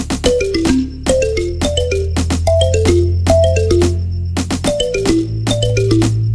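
Background music: quick runs of short pitched notes stepping downward over a beat, with a held bass note that changes pitch twice.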